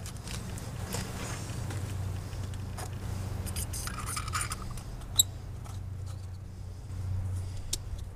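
Handling of a metal battery post and clamp cleaner: small clicks and a short scrape as it is worked open in the hands, with a sharp click about five seconds in and another near the end, over a low steady background hum.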